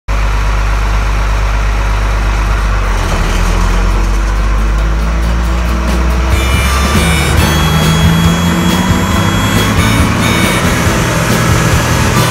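Combine harvester machinery running with a steady low drone, joined by music about halfway through.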